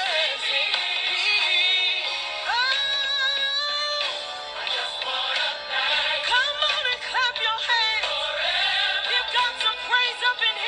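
Church song with a voice singing a sliding melody over accompaniment, including one long held note about two and a half seconds in; the sound is thin, with little bass.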